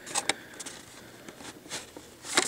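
Clear plastic blister packaging on a carded toy car crackling and clicking faintly as it is handled and turned over, with a couple of sharper clicks just after the start and scattered light ticks after.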